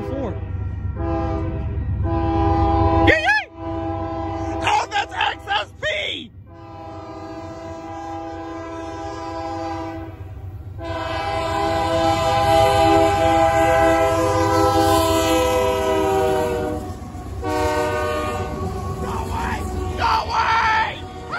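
Union Pacific GE C44AC diesel locomotive's multi-chime air horn sounding a series of blasts as the train approaches a grade crossing, the later blasts long and held through most of the second half. This is the crossing warning signal. Beneath the horn is the low rumble of the approaching train.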